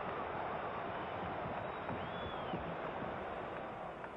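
Arena crowd noise on an old broadcast recording: a steady, even murmur of a large crowd during live basketball play.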